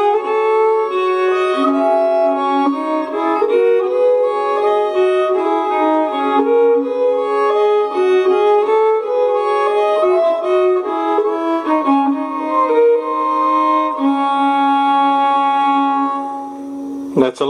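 Two viols (viola da gamba) playing a duet: sustained bowed notes in two voices that move step by step, with longer held notes near the end.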